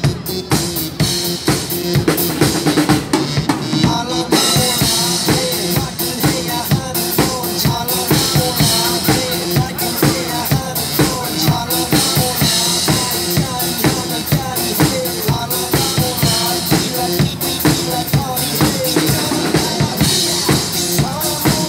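Acoustic Yamaha drum kit played live in a driving pop beat, with bass drum, snare and rimshots, over a recorded dance-pop backing track. The cymbals fill in more brightly from about four seconds in.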